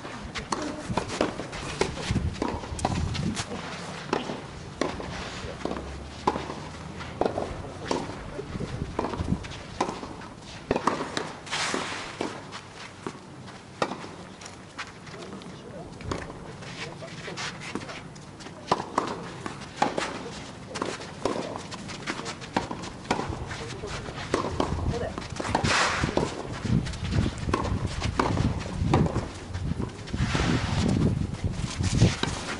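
Outdoor tennis court sound: indistinct voices with many scattered short knocks and footsteps, a few louder clusters about twelve seconds in and again about twenty-six seconds in.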